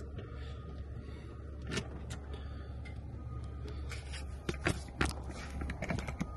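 A steady low rumble with a few sharp clicks and knocks, two about two seconds in and a quicker group of three near the end, from the dash switches and controls of an older truck's cab being handled before starting the engine.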